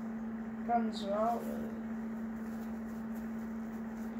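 A steady, single-pitched low hum, with a brief spoken word about a second in.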